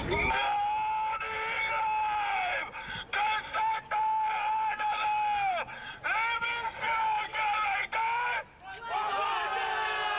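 A man's voice yelling through a megaphone, thin and tinny with no low end. It gives long, high held cries that drop in pitch as each ends, with shorter choppy calls in the middle.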